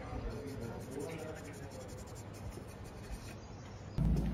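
Faint scratching and rubbing with light ticks, over faint voices.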